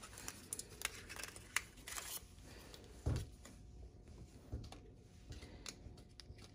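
Quiet handling sounds from a pack of hearing-aid wax guards being taken out and opened: faint packaging rustle and small plastic clicks, with a soft bump about three seconds in.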